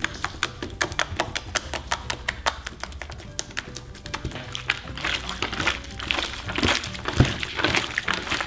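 Clear slime packed with peanuts being poked and pressed by fingertips, giving a quick run of small clicks and pops. About five seconds in, as the slime is gathered up by hand, these turn into wetter squelching. Soft background music plays underneath.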